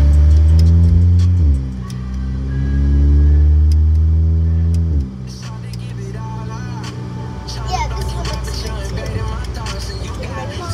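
Car engine heard from inside the cabin while accelerating. Its pitch rises, drops back suddenly about a second and a half in, rises again and drops about five seconds in, as the transmission upshifts. After that it settles to a quieter, steadier cruise.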